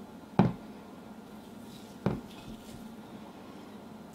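Two short knocks of glass mixing bowls and a spatula as icing is scooped into small glass bowls, one about half a second in and the other about two seconds in.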